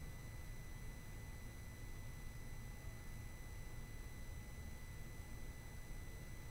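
Faint steady room tone: a low rumble with a thin, steady high whine and no distinct events.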